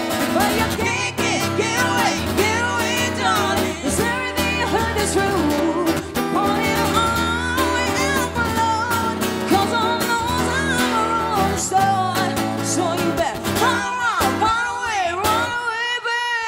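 Live acoustic guitar strummed in steady chords, strung with Dogal RC148 phosphor bronze strings in 012 gauge, under a woman's lead vocal with a man singing along in a pop song. The low guitar chords thin out near the end while the voice carries on.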